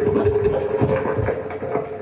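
Live experimental electronic noise music: a held mid-pitched drone that weakens partway through, under dense, irregular grinding and clicking textures.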